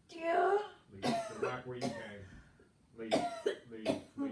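A person coughing in several short, harsh bursts, about a second in, near two seconds, just after three seconds and near the end, with throat-clearing and voiced sounds between them.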